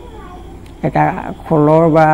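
A man's voice speaking after a short pause, holding a drawn-out vowel near the end.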